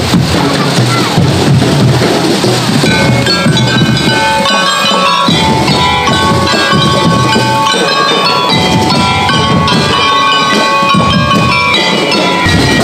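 Marching band playing: drums beat steadily while mallet percussion on wheeled stands rings out a melody of bright notes, coming in about three seconds in.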